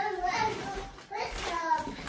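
A young child's voice in the background, two short vocal sounds about a second apart.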